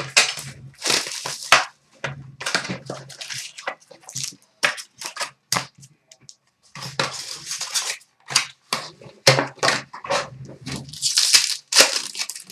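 Plastic wrapping on a box and packs of hockey trading cards being torn open and crinkled by hand, in a run of short, irregular crackling bursts with a brief lull midway.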